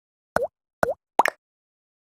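Three short cartoon-style plop sound effects in quick succession, each a quick dip and rise in pitch. The third is a doubled plop.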